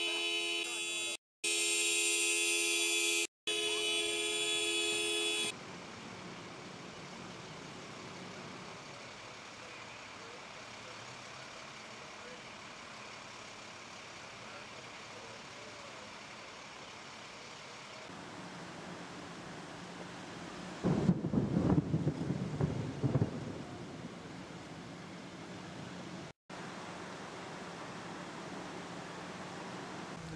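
A car horn sounding steadily for about five seconds, broken twice by short gaps, then a steady rushing hiss of fast-flowing floodwater, with louder low rumbling for a couple of seconds about two-thirds of the way through.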